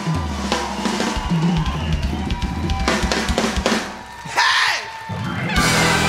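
Band music driven by a drum kit, with kick drum, snare and cymbals to the fore. About four seconds in, the music thins and drops in level for a moment, then the full band comes back in louder near the end.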